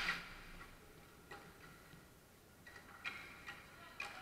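Faint, scattered clicks and taps of hockey sticks striking the ball and the hard court floor during play. There are a few isolated ticks, then a small cluster about three seconds in, after a louder sound fades away right at the start.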